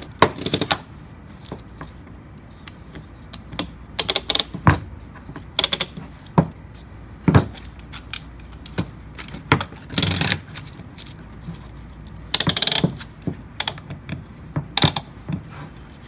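Metal bar clamps clinking and clicking as they are slid into place and tightened on a small press holding a glued veneer panel. The clicks come in scattered clusters with quiet gaps between.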